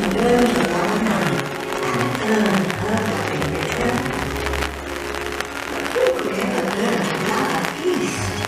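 Castle projection show soundtrack playing over outdoor park loudspeakers: music with a voice over it, steady in level.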